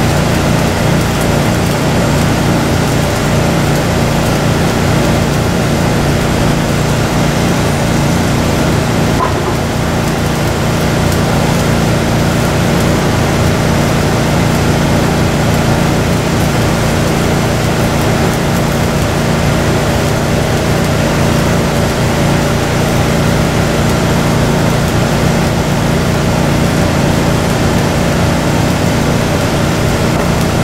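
Stick-welding arc crackling steadily as the electrode burns along a steel plate, over the steady drone of an engine running nearby.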